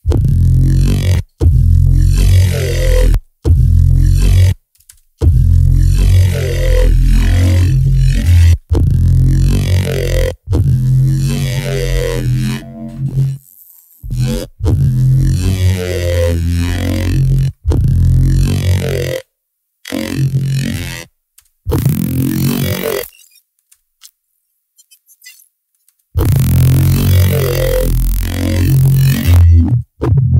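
Dubstep-style growl bass synth played in short, heavy low phrases through a spectral resynthesis plugin, broken by brief gaps and a pause of about three seconds near the end. Its tone shifts as the plugin's odd/even harmonic split and emphasis settings are changed.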